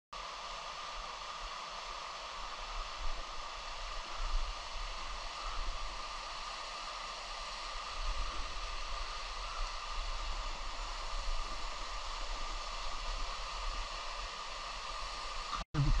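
Steady rush of flowing stream water, an even hiss without distinct splashes.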